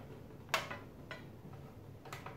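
A single sharp knock about half a second in, then a fainter tick: a computer monitor being handled as it is lifted and turned upright.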